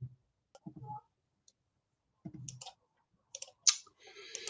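A few scattered computer mouse clicks, the loudest near the end, with faint low murmurs between them.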